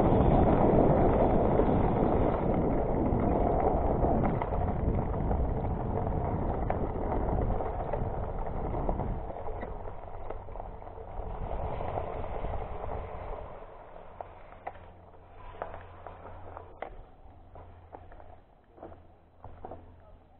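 Wind buffeting an action camera's microphone, mixed with tyre noise, as a Diamondback Edgewood hybrid mountain bike rolls quickly along a dirt trail. The noise fades over the first half as the bike slows, and is followed by a much quieter stretch with scattered clicks and knocks.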